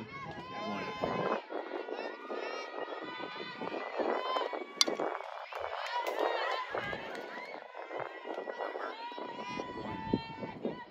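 Many overlapping voices of young softball players and spectators calling out and chattering, with a single sharp crack a little under five seconds in.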